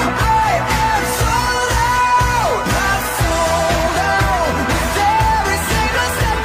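Pop song with a lead vocal singing held notes that slide down in pitch at their ends, over a steady drum and bass beat.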